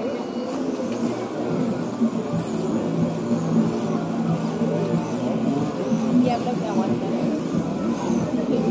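RC crawler truck's motor and drivetrain whining steadily as it creeps slowly over logs, with people talking in the background.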